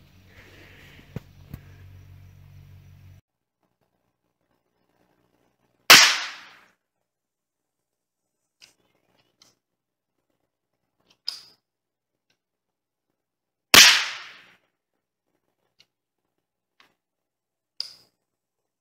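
.22 hollow-point rounds fired at a target: two loud sharp shots about eight seconds apart, each with a short ringing tail, with fainter sharp cracks in between and near the end.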